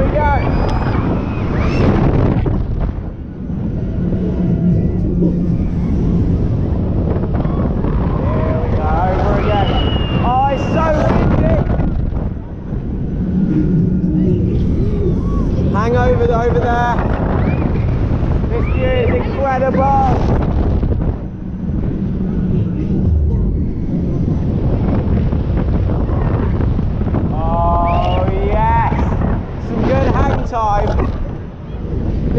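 Wind buffeting the microphone while riding a large swinging thrill ride, with riders screaming and shouting in waves about four times as the ride swings.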